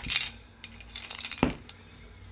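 Small black ball-joint mount adapters for an action camera clicking and clinking against each other as they are picked up into a hand: a few sharp clicks at the start, a quick run of lighter ticks, then a louder click about one and a half seconds in.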